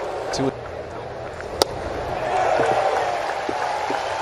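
Ballpark crowd murmur with a single sharp pop about one and a half seconds in, a pitched baseball smacking into the catcher's mitt on a strikeout pitch.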